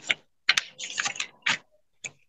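Typing on a computer keyboard: several short bursts of key clicks, with dead silence between them.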